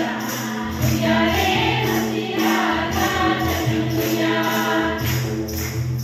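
A group of women singing a Christmas hymn together through microphones, with handclapping and a steady beat about twice a second.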